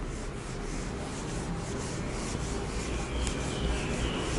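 Whiteboard eraser rubbing across a whiteboard in repeated back-and-forth wiping strokes.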